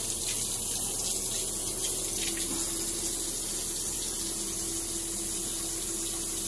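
Bathroom sink tap running steadily, water pouring into the basin. A low steady tone comes in about two and a half seconds in.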